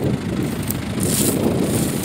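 Wind buffeting the microphone over the low, steady run of the Ursus C-360 tractor's diesel engine ticking over. A brief rustle about a second in.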